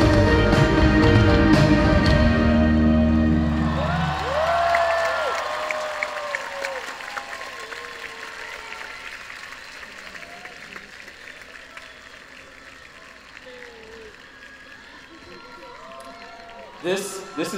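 A live band's last sustained chords ring out and die away about five seconds in. The crowd then cheers with shouts and whoops and applauds, the applause fading down.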